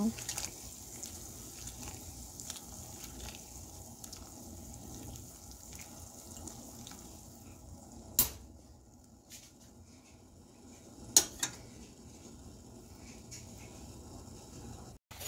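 Chopped spinach boiling in water in a stainless steel pot, stirred with a metal spoon at first, with small clicks of the spoon in the pot. Two sharp metallic knocks on the pot stand out, about 8 and 11 seconds in.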